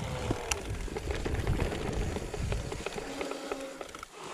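Mountain bike rolling downhill over a grassy track: a rattle of small clicks and knocks from the tyres and bike over the rough ground, with wind rumbling on the microphone. The rumble drops away about three seconds in, leaving the rattle and a faint steady hum.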